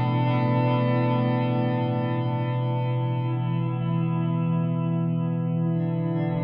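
Ambient guitar music: layered, sustained guitar chords run through chorus and echo effects, a steady wash of held tones.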